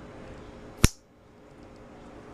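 A single sharp click of plastic building bricks snapping together, about a second in.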